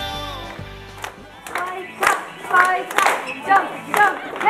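Background music fading out, then a group of people clapping in a steady beat about twice a second, with voices over the claps.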